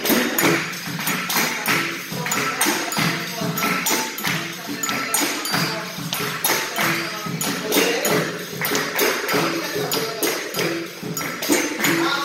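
Capoeira roda music: a berimbau plays a repeating pattern of short twanged notes over the jingling of a pandeiro, the beat of an atabaque drum, and the group's steady rhythmic hand-clapping.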